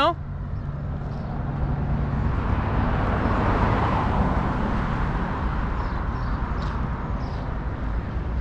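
A motor vehicle passing by on the street, its engine and tyre noise rising to a peak about halfway through and then fading away.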